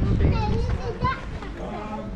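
A young child's high-pitched voice.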